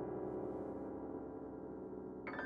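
A low, dense grand piano chord ringing on and slowly fading away.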